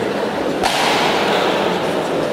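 Steady background noise of a large sports hall with people in it. A little over half a second in, a sudden sharp burst of noise cuts in and fades over about a second.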